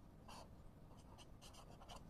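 Felt-tip marker writing on paper: a few faint, short strokes.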